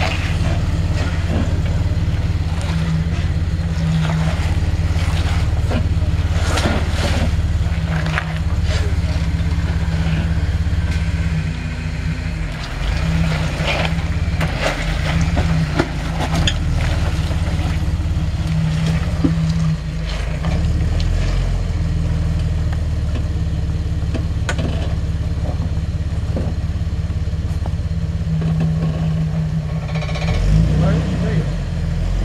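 Jeep Wrangler TJ's 4.0-litre inline-six running steadily at low revs while crawling over rock and mud, with several knocks and crunches of tyres and underbody against rock.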